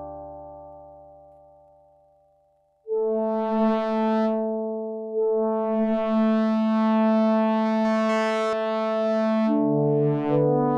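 Yamaha SY77 FM synthesizer playing a soft, detuned pad patch with a slight, slow pitch wobble. A held chord fades away over the first three seconds, then new chords come in and are held, changing about five seconds in and again near the end.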